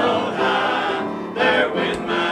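A small church choir of men's and women's voices singing a hymn in held notes, with a short breath between phrases a little past halfway.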